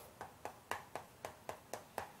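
Chalk writing on a chalkboard: a quick series of faint, short taps and scratches, about four a second, as each stroke of a word is written.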